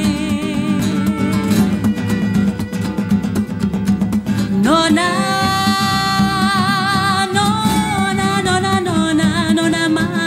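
A live Moluccan song: a woman's voice singing with vibrato over strummed acoustic guitar, tifa hand drum and violin. About halfway through, her voice swells up into one long held, wavering note without words that lasts several seconds.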